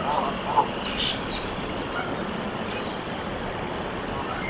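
A brooding Canada goose on the nest making a few short, soft calls in the first half-second, over a steady outdoor hiss. Faint birdsong sounds in the background.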